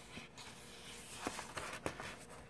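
A page of a hardcover picture book being turned by hand: a soft paper rustle with two light clicks near the end.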